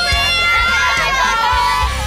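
A crowd cheering and shouting, many excited voices at once.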